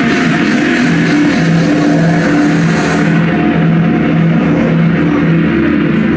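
A live band playing a song, loud and steady, with a repeating pattern of low held notes. The bright top of the sound thins out about three seconds in.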